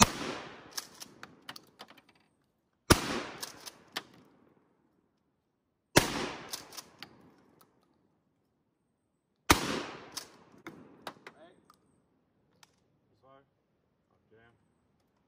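Four shots from a Mossberg Maverick 88 pump-action shotgun, about three seconds apart. Each shot is followed by a fading echo and a few sharp clicks of the pump action being worked.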